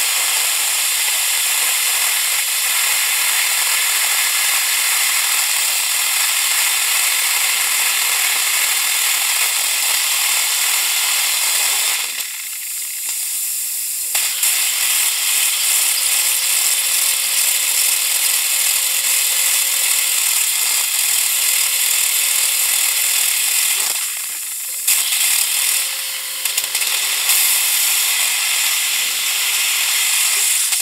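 Dental implant handpiece drilling with a steady high whir and hiss, marking the implant site in the bone of a jaw model. It eases off briefly twice, about twelve seconds and twenty-four seconds in, then runs on.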